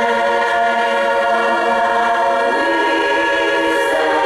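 Women's barbershop chorus singing a cappella, holding a long sustained chord; the lower parts move to a new chord about two and a half seconds in.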